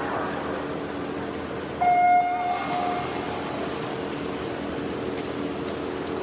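Electronic start signal of a swim meet: one loud, steady beep about two seconds in, starting the backstroke leg of a medley relay. A steady hum of background noise runs underneath.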